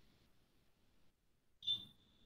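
Quiet typing on a computer keyboard, then near the end a sharp click and a single high, steady electronic beep that lasts about a second.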